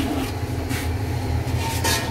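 A steady low rumble runs throughout, with two brief scraping or clattering sounds about a second apart.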